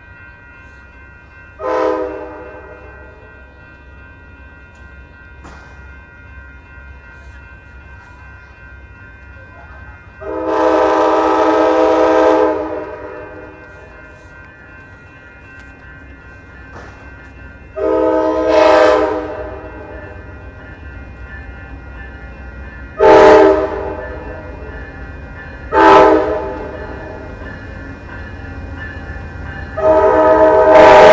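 Amtrak P42 diesel locomotive's air horn sounding a chord in five separate blasts: a short toot about two seconds in, a long blast of about two and a half seconds near the middle, a shorter one a few seconds later, then two short toots, with another blast starting at the very end. A steady low rumble runs underneath.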